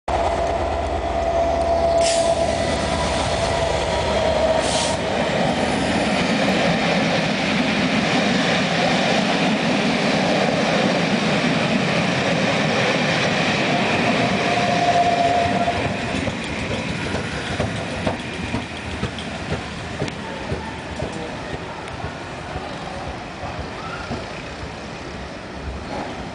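Passenger train top-and-tailed by Class 67 diesel-electric locomotives passing close by: locomotive engine and coach wheels running loud for about sixteen seconds. The sound then drops away as the train moves off, leaving regular wheel clacks roughly once a second.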